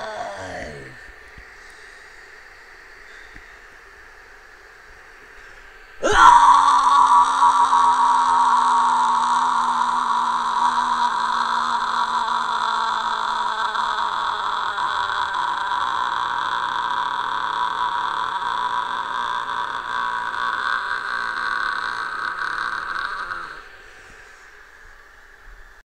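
A man's voice holds one long, harsh screamed note for about seventeen seconds. It starts abruptly about six seconds in and slowly sinks in pitch. Before it, the previous sung line trails off with a falling pitch in the first second.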